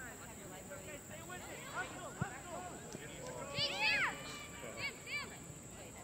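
Distant shouts and calls of youth soccer players and spectators across an open field, faint through most of it, with a cluster of short high calls about three and a half to five seconds in.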